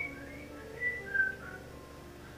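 A person whistling a few short high notes over quiet background music, the two loudest notes near the middle.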